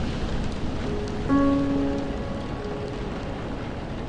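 Steady rain falling, with soft piano notes over it; a piano chord is struck about a third of the way in and rings on, fading slowly.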